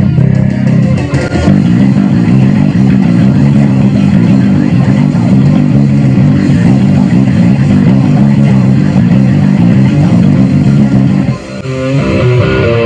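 Electric bass guitar playing a fast, heavy riff along with a loud heavy-metal song. The music drops out briefly near the end, then a new riff starts.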